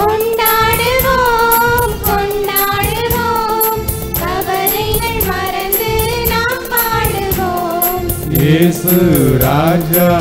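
Church choir singing a Tamil hymn in long, sustained notes over amplified accompaniment with a steady beat. Near the end a lower, male voice takes up the next line.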